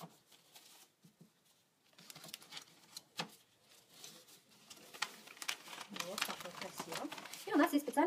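A paper-and-plastic autoclave sterilization pouch rustling and crinkling as steel manicure nippers are laid into it by gloved hands, with scattered light clicks that grow busier from about two seconds in. A voice begins near the end.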